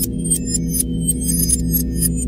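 Electronic sci-fi sound design: a steady low synth drone under rapid, short, high-pitched computer-style bleeps and ticks, like a scanner reading data.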